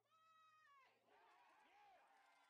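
Very faint, high-pitched cries from a distant voice: one drawn-out cry that falls in pitch at its end, then a shorter rising-and-falling cry.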